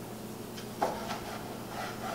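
Santoku knife slicing through a tomato and knocking on a wooden cutting board: one sharp knock just under a second in, then a few fainter cuts.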